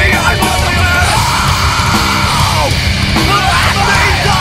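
Crossover metal song: distorted band sound with heavy drums and bass under yelled vocals, including one long held note from about a second in to nearly three seconds.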